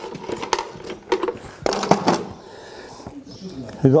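Farrier's tool caddy being carried and set down on a concrete floor, its metal tools clinking and knocking a few times in the first two seconds, with scuffing.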